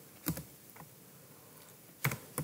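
A few faint keystrokes on a computer keyboard, clicks clustered in the first second, as typed text is deleted from a name field.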